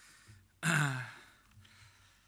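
A man's breathy, drawn-out 'äh' of hesitation, falling in pitch, about half a second in, close to a sigh; the rest is quiet room tone.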